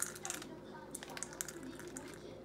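Pecan pieces poured from a plastic bag into a measuring cup: a loose run of small, light clicks and rattles.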